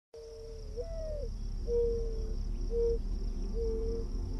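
Mourning dove cooing: a first, longer note that swells up in pitch and falls back, followed by three shorter, lower, level coos. A steady high-pitched hum runs behind it.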